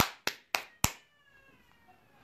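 Four quick sharp hand claps, about three a second, the first the loudest. A faint high tone falls slowly through the second half.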